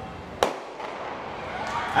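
Starter's pistol fired once for the start of a 100 m sprint, a single sharp crack about half a second in with a short echo after it, over faint background voices.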